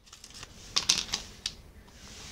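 A handful of light clicks and taps, bunched around the middle, over a faint hiss.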